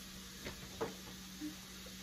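Faint clicks of crab legs being handled and pulled apart at a table, heard twice over a steady low electrical hum.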